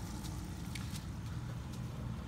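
Small electric aquarium air pump humming steadily, with a few faint ticks.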